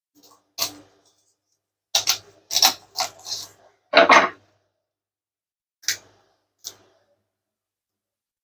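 A chef's knife cutting through a partly frozen quail on a wooden cutting board, and the bird being pressed flat: a run of short knocks and crunches of blade, bone and board. The loudest crunch comes about four seconds in, with two single taps later on.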